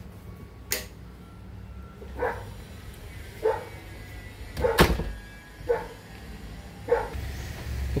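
A dog barking, about six single barks roughly a second apart.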